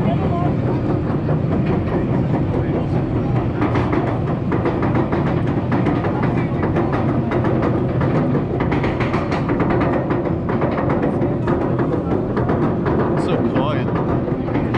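Roller coaster chain lift running as the train climbs the lift hill of a Bolliger & Mabillard hyper coaster: a steady chain rattle with rapid clicking from the anti-rollback.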